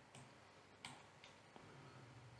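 A few faint computer mouse clicks over near silence, the sharpest a little under a second in.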